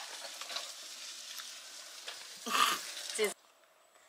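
A plastic spoon-straw stirring and scraping shaved ice in a paper cup, a steady gritty crunching. A brief louder burst with some voice in it comes about two and a half seconds in, and the sound stops abruptly just after three seconds.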